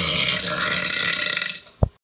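A long, drawn-out cartoon burp in a girl's voice, fading out about one and a half seconds in, followed by a brief low thump near the end.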